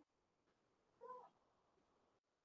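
Near silence, with one short, faint pitched call about a second in.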